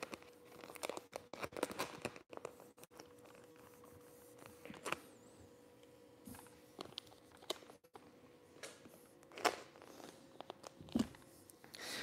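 Faint, scattered crinkling and rubbing of a sheet of adhesive vinyl wrap as hands press and slide it smooth over a mini-fridge panel, with a few slightly louder rustles now and then.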